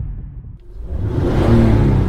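Logo sound effect: a low rumbling swoosh that dips, then swells to a peak about one and a half seconds in, with a low humming tone inside it.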